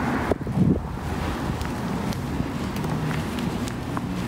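Wind buffeting a phone microphone while walking outdoors: a steady, loud rumbling noise, with faint footsteps of sneakers on a concrete sidewalk.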